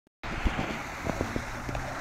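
Steady rush of running and splashing water from a paddle-wheel water feature, with wind buffeting the microphone.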